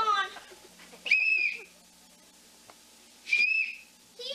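Two short, high whistle tones about two seconds apart, each held nearly steady for about half a second.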